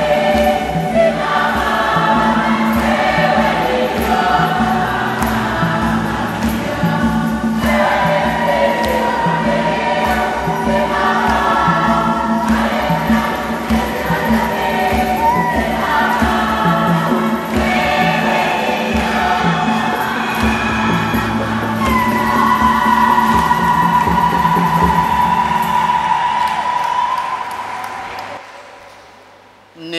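Women's choir singing a Swahili church hymn over a steady low bass line and beat. It ends on a long held note that fades out near the end.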